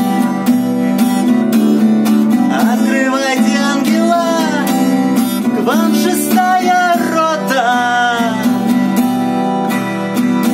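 Acoustic guitar strummed in a steady rhythm, with a man singing over it from about two and a half seconds in.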